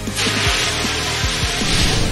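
Fire extinguisher discharging: a steady, loud hiss of spray that starts just after the beginning and cuts off near the end.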